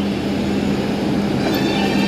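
Steady low hum of a metro train standing at the platform as its doors slide open.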